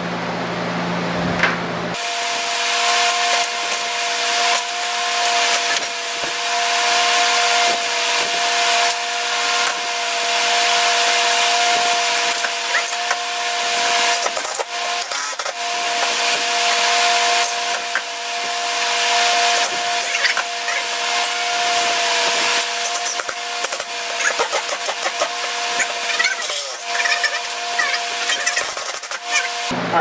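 Workshop sounds of hand-tool and drill work at a wall, played back sped up: a steady high-pitched whine over a loud hiss, with many rapid knocks, scrapes and clicks. It starts and stops abruptly on edits, about two seconds in and just before the end.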